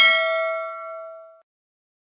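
A single bell-chime 'ding' sound effect, as for a notification bell being clicked: one bright strike with several ringing tones that fades out over about a second and a half.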